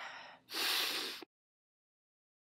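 A person with a cold breathing heavily close to the microphone: a short breath, then a longer, louder one. The sound cuts off abruptly about a second and a quarter in.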